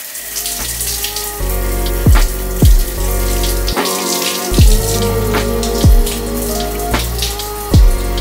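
Shower water spraying steadily onto skin and tile, under background music with a heavy bass beat.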